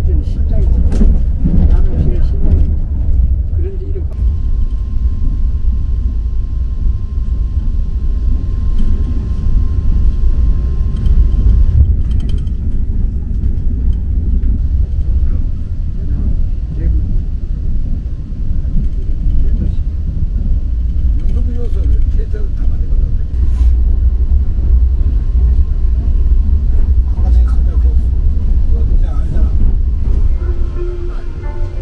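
Cabin of an ITX-MAUM electric multiple-unit train running at about 126 km/h: a steady deep rumble of wheels on rail and car body. A faint steady high tone sits over it for several seconds early on.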